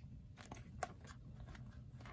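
A few faint clicks and crinkles of a plastic deli cup lid being handled and worked open, over a steady low room hum.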